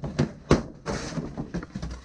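A cardboard box being opened by hand. Its flaps and packing tape give a few sharp cracks and scrapes, the loudest about half a second in, among the rustle of cardboard and plastic wrap.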